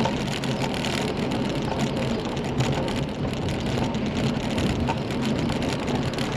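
Steady rolling noise of a Trek Marlin 7 mountain bike ridden along a brick-paved footpath, heard from a camera mounted on the bike, with small rattles and ticks throughout.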